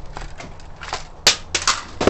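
Plastic VHS cassette clacking against a concrete floor: a few short, sharp clacks, the loudest about a second and a quarter in.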